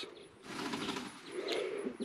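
A faint, soft, low call from one of the birds in the poultry pen, heard once past the middle.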